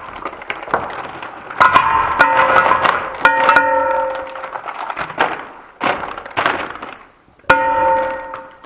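Handfuls of cellophane-wrapped peppermint hard candies dropped one after another into a plastic bowl, each drop a clattering rattle. The bigger drops leave a brief ringing tone that fades within about a second.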